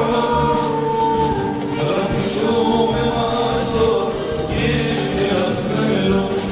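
Armenian estrada (rabiz) song performed live: a male vocalist sings held, melodic lines over a band with bass and cymbals.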